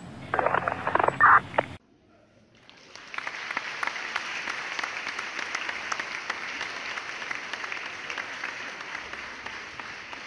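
Recorded auditorium applause, a crowd clapping, fading in about three seconds in and then going on steadily. Before it, a short loud voice sound is cut off abruptly, followed by a moment of near silence.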